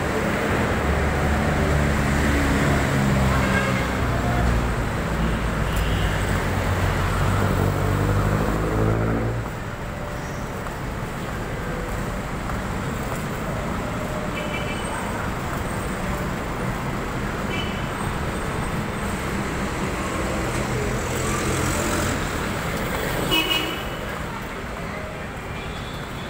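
City road traffic: a nearby vehicle engine runs and climbs in pitch as it speeds up, then drops away abruptly about nine seconds in. Steady traffic noise follows, with a few short horn toots.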